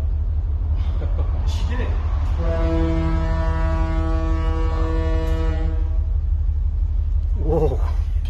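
A ship's horn sounds one long, steady, low blast lasting about three and a half seconds, starting a little over two seconds in. A constant low rumble runs underneath throughout.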